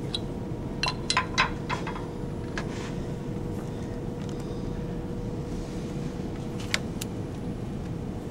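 Small metal clicks and clinks as a dial test indicator and its holder are handled and set against a steel part in a lathe chuck: a quick cluster about a second in and two more near the end. Under them runs a steady machine-shop hum with a faint steady tone.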